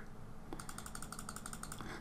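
Faint, fast run of small, evenly spaced clicks, about a dozen a second, starting about half a second in: a computer mouse's scroll wheel being spun.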